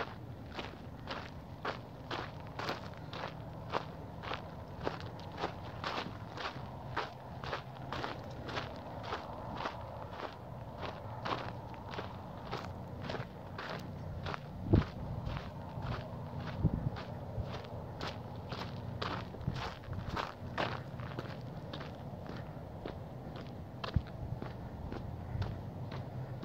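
Footsteps of a person walking at an even pace, about two steps a second, over a steady low hum, with one louder knock about fifteen seconds in.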